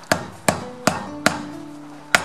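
Hammer tapping a sharp nail to drive it through leather into a wooden board, punching a rivet hole: four light, even metal-on-metal strikes, about two and a half a second.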